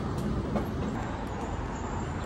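Steady low rumble of city street noise, like traffic passing.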